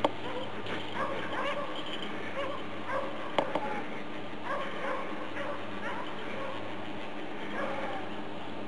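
A Belgian Tervuren avalanche search dog barking and whining in short, repeated calls, the way a rescue dog signals a find in the snow.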